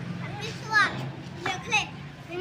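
A young child's high-pitched voice, two short bursts of speaking or calling out, over a steady low hum.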